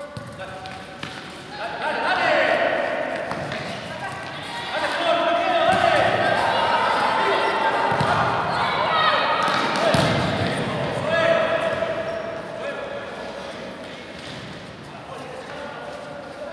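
Shouting voices echoing in an indoor sports hall during a futsal match, with the ball's knocks off feet and the court floor cutting through, the sharpest about ten seconds in. The calls are loudest through the middle and fade toward the end.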